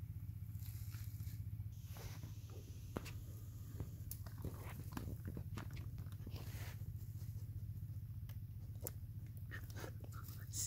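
Faint crinkling and crackling of a plastic fish bag being handled in shallow pond water, as irregular small clicks, over a steady low hum.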